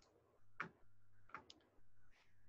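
Faint computer mouse clicks, a few short ticks, against near silence.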